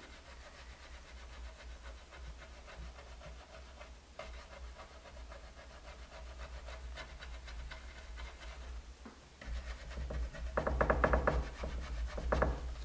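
Paintbrush dry-rubbing paint onto a painted wooden board: a faint, rapid scrubbing rasp of short brush strokes. Near the end comes a louder, breathier rasp lasting about a second.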